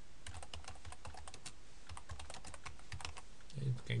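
Typing on a computer keyboard: a quick, irregular run of key clicks as a line of text is typed. A man's voice starts just before the end.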